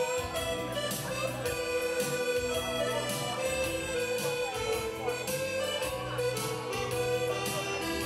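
Live dance-band music with no singing: a held lead melody over a steady beat.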